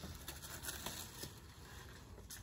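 Faint rustling of small plastic packets of pins being handled, with a few light ticks scattered through it.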